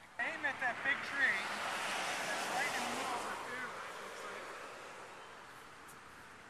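Several people shouting at once in a short outburst, over a rush of noise that swells and then slowly fades away.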